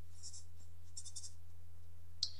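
Felt-tip marker writing on paper: two short clusters of faint strokes, about a quarter second in and about a second in, over a steady low hum.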